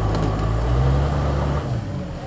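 Turbocharged diesel engine of a 1964 Mercedes Unimog running hard under load as the truck climbs a steep, muddy slope. Its low note rises slightly, then the revs fall off sharply just before the end.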